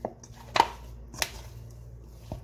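Hands kneading dough in a stainless steel bowl, with three short knocks as the dough is pushed against the bowl: a light one at the start, the loudest about half a second in, and another a little over a second in.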